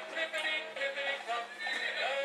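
Electronic sound chip in a toddler's ride-on toy horse playing a short tune with a recorded horse whinny.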